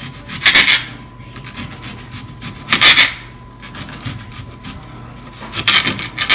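Serrated kitchen knife slicing through a whole peeled onion held in the hand: three cuts, about two and a half seconds apart.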